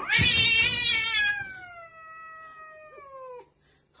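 A cat giving one long, hostile yowl at its own reflection in a mirror. The yowl jumps up sharply at the start, then slowly falls in pitch as it fades, and it cuts off about three and a half seconds in.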